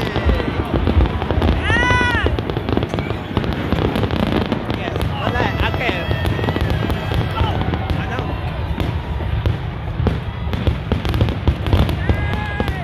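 Fireworks display going off in rapid succession: a dense string of bangs and crackles, one on top of the next.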